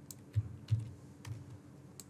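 Faint, unevenly spaced clicks of a computer keyboard and mouse, about five or six in two seconds, as text is edited in a web form.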